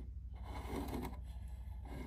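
Quiet room with a low steady hum and faint rubbing as a plastic model railway station building is shifted on a wooden tabletop.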